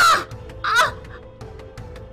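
A woman's short, harsh screams while being choked, two in quick succession near the start, over background music with a steady held tone.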